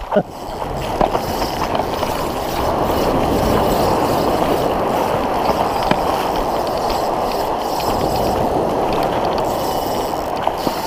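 Ocean surf breaking and washing over the sand in the shallows, a steady rushing noise that swells in over the first second.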